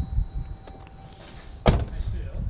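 The driver's door of a 2016 Jeep Grand Cherokee being shut: one solid thunk near the end.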